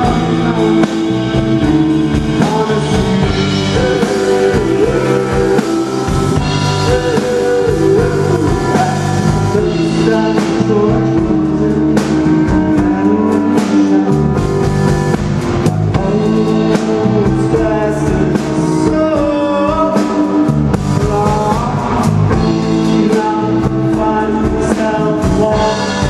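Live rock-and-roll band playing, with a male lead singer singing into a handheld microphone over the band.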